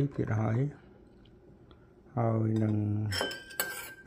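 A metal spoon clinks and scrapes against a porcelain bowl in the last second, each strike leaving a brief thin ring. A voice talks before it.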